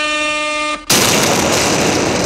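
An air horn sound effect blowing one held, steady blast that cuts off suddenly just under a second in, followed at once by a loud rush of noise.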